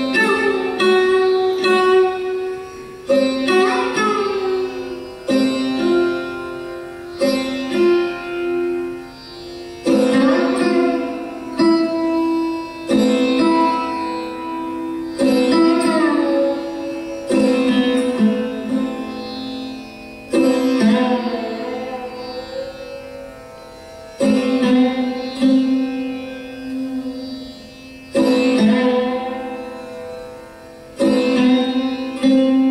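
Sarod played solo and slowly: single plucked notes every second or two that ring and fade away, several sliding up or down in pitch, over lower strings left ringing.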